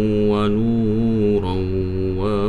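A man's voice chanting an Arabic prayer in a slow, melodic recitation style, holding long wavering notes with a short break about halfway through before rising into an ornamented phrase.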